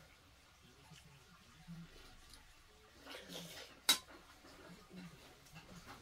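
Quiet eating at a table, with one sharp clink of a metal spoon against a stainless steel bowl a little before four seconds in.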